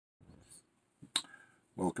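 A single sharp click just over a second in, then a man starts speaking.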